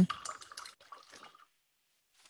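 Faint, brief swishing and dabbing of an oil-paint brush being wiped clean on a paper towel, dying away about a second and a half in.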